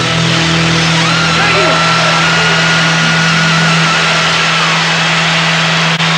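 A live band holds the closing chord of a rock number under loud, even crowd cheering. A low note is held throughout, and a high wavering note is held above it from about a second in until near the end.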